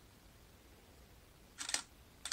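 Faint room tone, then about one and a half seconds in a digital SLR camera's shutter fires once: a short rattle of clicks as it takes an interferogram.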